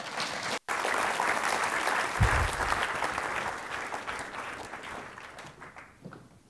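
Audience applauding, the clapping fading away towards the end, with a dull thump about two seconds in.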